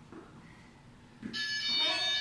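Faint soft thuds, then about a second in a loud, steady electronic buzzer tone starts and holds: an interval timer signalling the end of a 45-second work period.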